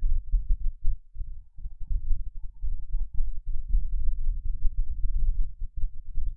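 A low, irregular rumble that rises and falls unevenly throughout, with no speech or music.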